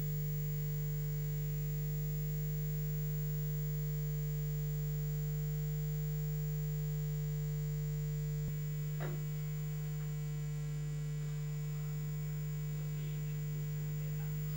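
Steady electrical mains hum with many overtones, dropping slightly in level about two-thirds of the way through, with a faint tick soon after.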